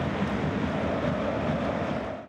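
A steady rushing noise with a low rumble underneath, an outro sound effect laid under a closing logo card.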